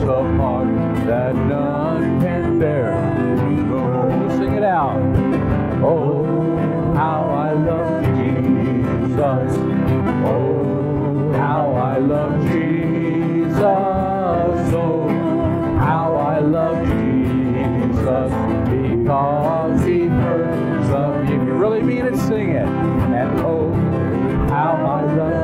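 A man singing a hymn while strumming an acoustic guitar, his voice and the chords steady throughout.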